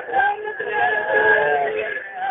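A man's voice singing a Saraiki naat, a devotional song in praise of the Prophet, drawing out long held notes.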